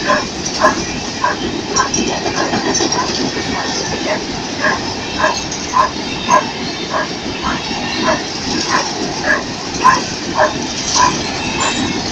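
Empty grain hopper cars of a long freight train rolling past with a steady noise of wheels on rail. Over it a dog barks over and over, about once every half-second.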